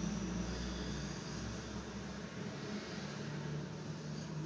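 Steady background hiss and low hum of room noise, with a low rumble that drops away about a second in.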